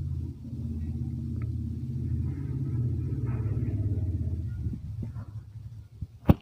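Low outdoor rumble that swells toward the middle and fades near the end, with faint voices in the background.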